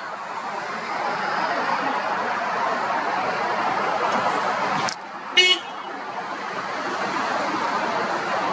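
Steady outdoor traffic noise, with a click and then a single short car horn toot about five and a half seconds in.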